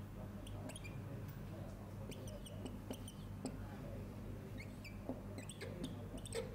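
Marker writing on a board: a scatter of short, high squeaks and small taps, over a steady low hum.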